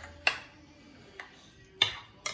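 Metal spoon clinking against a glass bowl while stirring chopped salsa: two short clinks, one about a quarter second in and a louder one near the end, with quiet between.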